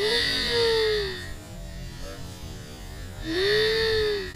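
A voice singing two long held vocal exercise notes, each about a second long with a gap between, each arching slightly up and then down in pitch.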